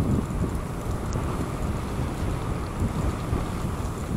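Steady rumbling ride noise from an e-bike moving along a dirt path: wind buffeting the camera microphone and tyres rolling over the packed gravel surface.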